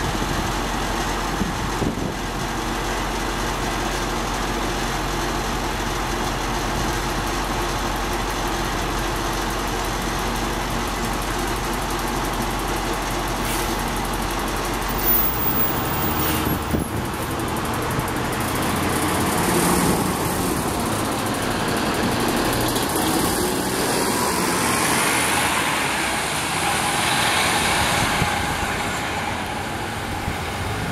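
NJ Transit NABI 40-SFW city bus idling at the kerb with a steady low drone. Near the middle there is a brief sharp sound as the doors close, then the engine note rises and stays louder as the bus pulls away.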